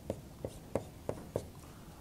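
Dry-erase marker writing on a whiteboard: about five short, sharp strokes and taps.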